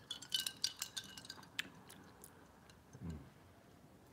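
Ice cubes clinking against a drinking glass as it is tipped up to drink: a quick run of light clinks over the first second and a half. A faint short hum of a voice follows about three seconds in.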